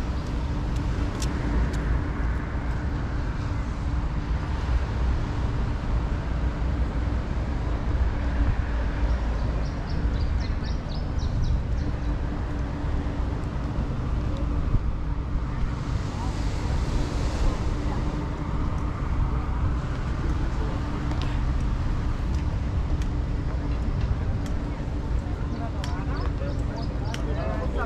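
Steady outdoor street ambience: a continuous low rumble with a faint steady hum, and scattered voices of passers-by in the background.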